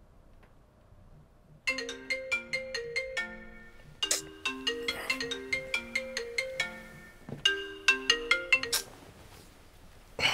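Mobile phone ringtone: a tune of short, separate notes starting a couple of seconds in. It plays through twice, then cuts off shortly before the end as the call is answered.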